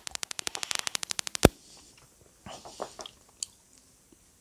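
Drama sound effect of a lift control panel shorting out as its wires are pulled: a fast, even run of clicks ends about a second and a half in with one sharp bang, followed by a few faint knocks.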